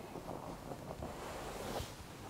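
Quiet rustling of clothing and small handling noises as hands work on a person lying on a treatment table, with a soft whoosh near the end.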